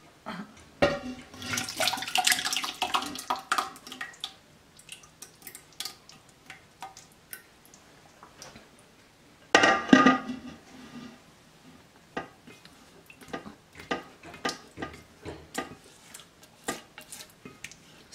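Chicken broth being poured from a slow-cooker crock into an empty stainless steel stock pot: a pour and splash twice, once about a second in and again about halfway through, with many light knocks and scrapes of crock and spatula against the pot.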